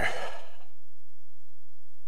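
A man's sigh, a breathy exhale of about half a second at the start, followed by a pause with only a faint low hum.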